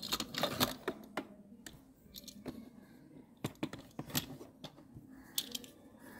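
Irregular light clicks and taps of small doll house pieces and a doll being handled and set in place, with a dozen or so scattered knocks.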